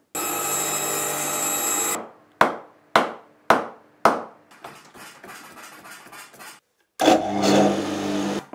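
A woodworking machine runs steadily for about two seconds and stops. Next comes a hammer striking the end of a cricket bat's cane handle four times, about half a second apart, each blow ringing briefly, followed by softer scraping. Near the end an electric workshop motor switches on with a sudden start.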